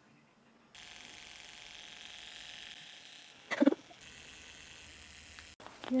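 Faint, steady whir of an electric shoulder and neck massager's motor running, with a brief louder sound about three and a half seconds in.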